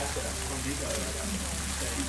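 Food sizzling on a flat-top griddle: a steady hiss, with faint voices talking underneath.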